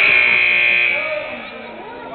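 Gym scoreboard buzzer sounding one steady high note for about a second, then fading, over the voices of players and spectators.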